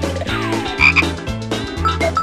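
Bouncy cartoon theme music with a repeating bass line, overlaid with comic sound effects: a falling slide about half a second in and two short high blips about a second in.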